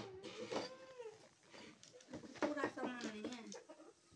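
Children's voices: faint wordless vocalizing with a gliding pitch, in two stretches.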